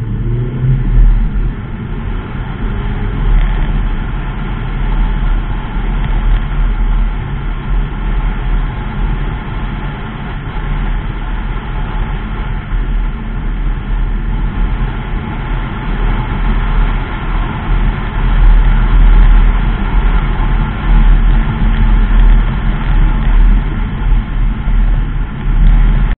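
Mazda 3 2.0 saloon driving, heard from inside the cabin: a steady, loud low rumble of engine and tyre noise, its loudness swelling and easing.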